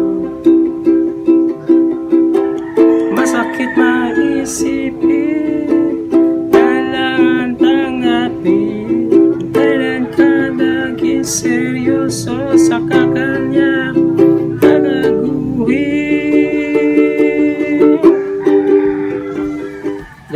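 Ukulele strummed in a steady rhythm, changing through G, C, A minor, C and D chords, with a voice singing along over it.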